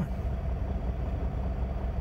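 Semi truck's diesel engine idling, a steady low rumble heard from inside the sleeper cab.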